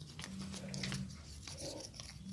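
Spiked wooden massage roller rolled over an oiled ear close to the microphone, giving faint scattered clicks and a wet, crackling rub. A low hum runs through the first half.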